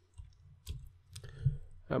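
A few separate keystrokes on a computer keyboard, sharp isolated clicks with a duller thump about one and a half seconds in, as lines are added in a text editor.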